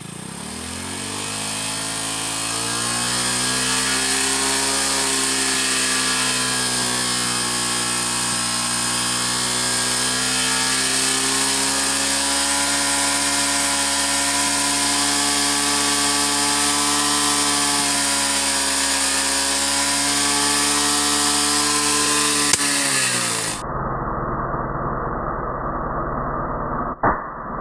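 Hero Glamour motorcycle's single-cylinder engine held at raised revs, its exhaust blowing into a large balloon fitted over the silencer. The revs climb over the first couple of seconds, hold steady for a long stretch, then fall away sharply near the end.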